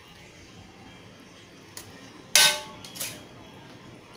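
A metal ladle striking a stainless steel serving tray as food is spooned in: a light click, then one loud clank about two and a half seconds in that rings briefly, and a faint tap after it.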